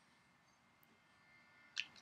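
Near silence: faint room tone, with one brief soft click near the end.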